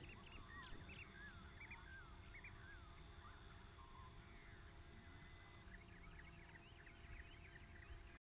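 Faint birds chirping: many short, quick chirps and whistles scattered throughout, over a near-silent outdoor background.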